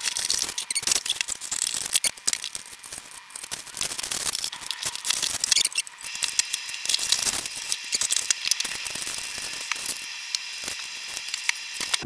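Cardboard boxes and plastic packaging being opened and handled: a dense, crackling rustle of cardboard and plastic wrapping, broken by sharp clicks and knocks as parts are taken out and set down on a wooden table.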